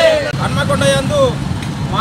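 A group of men shouting protest slogans, voices rising and falling, over the noise of passing street traffic.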